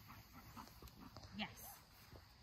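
Near quiet: a faint low rumble, with one short spoken word, "Yes", about one and a half seconds in.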